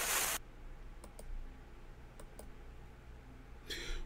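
A television-static hiss from a glitch transition cuts off about half a second in. It is followed by a low steady hum with a few faint clicks, in two pairs about a second apart.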